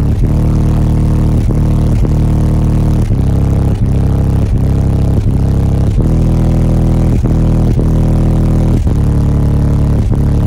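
Loud bass-heavy music played through a semi-truck cab's custom subwoofer system, with deep sustained bass notes changing about every three-quarters of a second.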